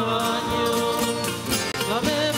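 Entrance hymn sung by a church music group with acoustic guitar accompaniment, with a momentary drop-out near the end.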